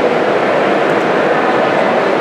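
Loud, steady background din of a trade-show hall, as loud as the talk itself, with no clear voice standing out of it. It is the poor, noisy sound of the recording.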